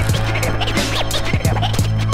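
Hip-hop beat with drum hits over a held bass note, and turntable scratches gliding up and down in pitch over it.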